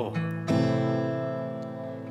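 Acoustic guitar (a Taylor 214ce) struck on a chord about half a second in, its notes left to ring and slowly fade between sung lines of a slow ballad accompaniment.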